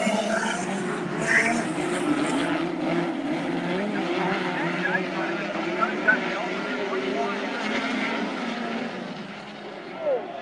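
A pack of speedcars racing on a dirt oval, several engines running hard together, their pitches wavering up and down as the cars go round.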